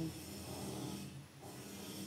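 A pen writing on notebook paper, a scratchy rubbing as the words are written.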